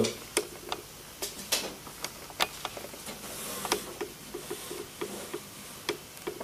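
Scattered light clicks and taps at irregular intervals, with a run of softer, quicker small knocks in the second half.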